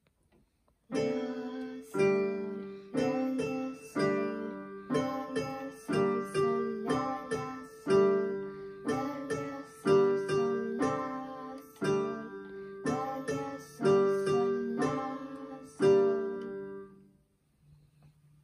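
A slow lullaby in G major played on an electronic keyboard. A low two-note chord sounds about once a second, with lighter notes in between. It starts about a second in and dies away near the end.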